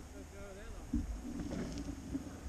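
Low rumble of wind and road noise on a handlebar-mounted camera while riding a gravel road, with a faint voice briefly about half a second in.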